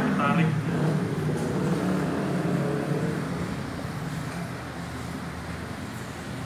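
A steady low mechanical hum, loudest at the start and slowly fading, with a brief voice at the very start.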